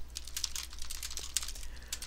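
Computer keyboard typing: a quick, steady run of keystrokes as a line of code is entered, over a faint steady low hum.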